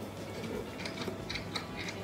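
Faint, light clicks and rustles of a small plastic pipette being squeezed and handled in a toy hippo's ear, a run of them in the second half.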